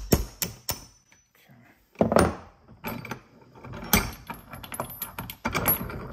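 Metal clicks and clanks as a bench vise is loosened and a forged engine-hoist hook hanging on a steel chain is worked free of its jaws, the chain links clinking. There is a louder knock about two seconds in, and busier clattering from about three seconds on.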